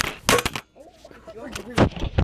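Two loud, sudden knocks about a second and a half apart, from the handheld camera's microphone being handled as it swings, with faint voices between them.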